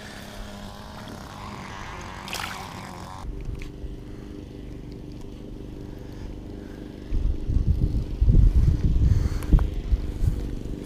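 A steady low motor hum sets in about three seconds in. From about seven seconds, loud irregular low rumbling buffets the microphone, like wind.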